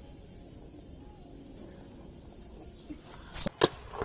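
Two sharp paintball marker shots in quick succession near the end, about a quarter of a second apart, the second louder, after a stretch of faint background.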